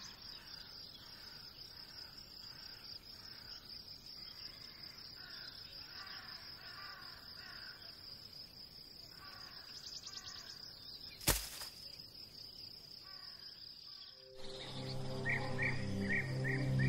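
Outdoor ambience: a steady high insect drone with repeated bird calls over it, and one sharp knock about eleven seconds in. Background music comes back in near the end.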